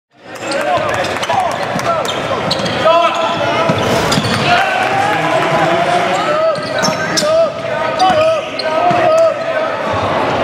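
Live game sound in a gym, fading in quickly at the start: a basketball bouncing on the hardwood, with overlapping voices of players and spectators and short squeaks throughout.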